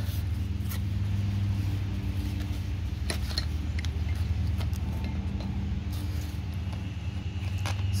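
A steady low engine or motor hum runs throughout, with a few faint metallic clicks about three seconds in as the steel flaring bar is worked loose from the copper pipe.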